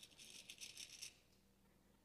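Faint rattle of small hard objects being handled, a quick run of light clicks that stops about a second in.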